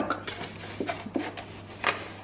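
Handling of a plastic milk bottle: a few soft knocks and rubs, with a sharper click near the end.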